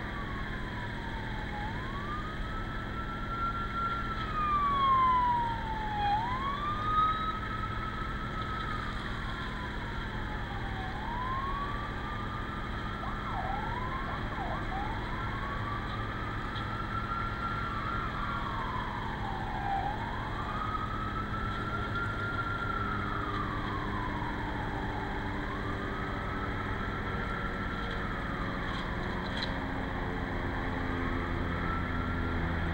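An emergency vehicle siren wailing, its pitch rising and falling slowly in long sweeps of about four to five seconds each, with a few quick yelps around the middle, over a steady low hum.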